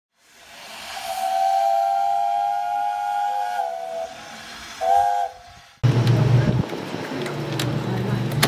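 A steam whistle blowing one long chord-like blast of about three seconds, then a short second blast. Then an abrupt switch to a steady low hum with scattered clicks.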